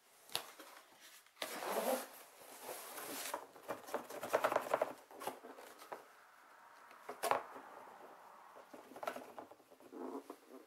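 Crinkling and rustling of plastic packing material and a cardboard sheet being handled, in two longer bursts in the first half, then a few sharp clicks.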